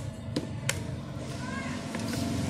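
A few sharp clicks and taps in the first second, from handling an analog multimeter and its test leads while it is set to the 10k range and zeroed. A steady low hum runs underneath.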